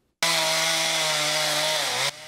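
Chainsaw running at high speed as it carves into a tree stump. It cuts in suddenly a moment in, runs steadily, and its pitch sags slightly near the end.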